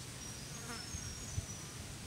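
A flying insect buzzing briefly past the microphone outdoors, with a few faint, short, high-pitched chirps over a low steady background hum. A soft low thump comes about a second and a half in.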